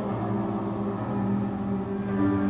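Slow music with long held notes, several sounding together in the low and middle range.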